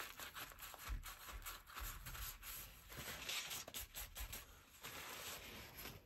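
Faint rubbing of a paper tissue wiped across smooth card stock to take off moisture, in short strokes with a few soft knocks against the desk.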